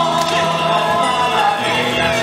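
Traditional Castilian folk music: several voices singing together over a small band of guitars and other plucked strings.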